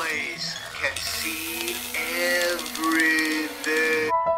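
An edited, pitch-altered voice drawn out into held, sung-like notes that bend up and down, over a music bed, with a fast ticking texture behind it from about a second in.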